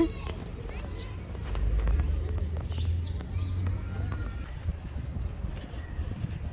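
Low wind rumble on the microphone, loudest in the first half, with light footsteps and faint distant voices.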